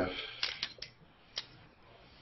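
Scissors snipping through rubber bands on a wooden-dowel tensegrity tower: four faint, short clicks in the first second and a half.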